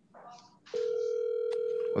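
Telephone ringback tone: a steady single-pitched ring heard over the line while an outgoing call rings, starting about three quarters of a second in.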